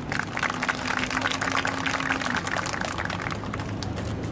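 Audience applauding: many hands clapping irregularly, thinning out toward the end.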